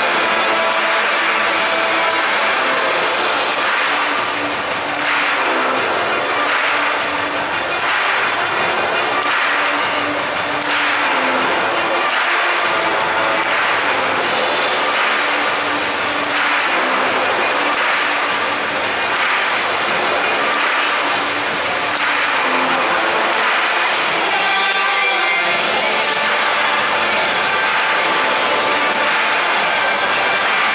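Hype-video music with a steady beat played loud over a football stadium's PA system, with a short break about five seconds before the end.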